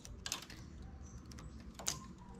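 Faint clicks of a hand transfer tool and fingers against the steel needles of a knitting machine's needle bed as needles are counted off for a stitch transfer, with one sharper click near the end.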